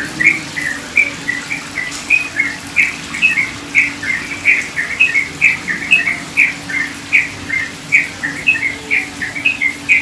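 Small birds chirping in a quick, unbroken run of short notes, about three a second, over trickling water. A low steady hum runs underneath.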